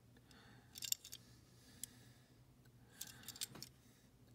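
Faint small clicks and rattles of a 1:64 die-cast toy car turned over in the fingers: a cluster about a second in, a single tick near two seconds, and another cluster around three seconds.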